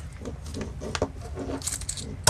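Light clicks and rubbing from carbon-fibre drone frame plates and small hardware being handled, with a brighter cluster of clicks near the end.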